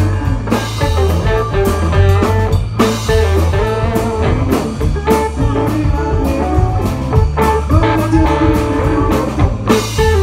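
Live blues-rock band playing loud: electric guitars play melodic lead lines over bass guitar and a drum kit.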